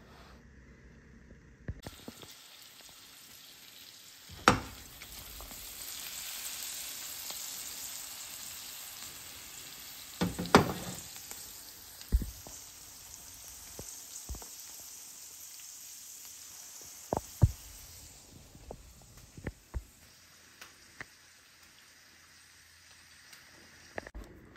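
Food sizzling in a hot frying pan, a steady hiss that dies away in the last few seconds, with sharp clinks and knocks of utensils on cookware scattered through it. The loudest knocks come about four and a half and ten and a half seconds in.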